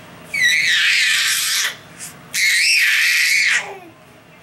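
Infant shrieking with laughter: two long, high-pitched squeals, each lasting over a second, with a short pause between them.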